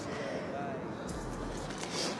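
Faint rustle of a fleece jacket being pulled off over the head, over a quiet beach background; a low rumble comes in about halfway through.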